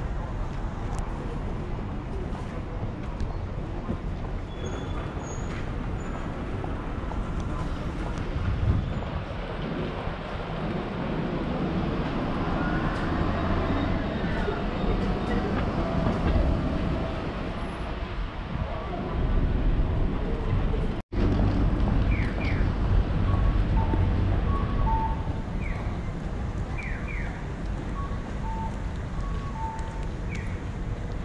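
Busy city street ambience with steady traffic noise. A vehicle whine rises and falls in the middle, there is a brief drop-out about two-thirds in, and short high chirps come in the last third.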